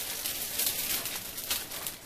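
Paper exam-table cover rustling and crinkling under a toddler as he shifts on it.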